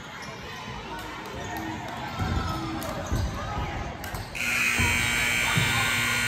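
Basketball thudding on a hardwood gym floor, then the gym's scoreboard buzzer sounds suddenly about four seconds in and holds a loud, steady buzz: the horn ending the first half.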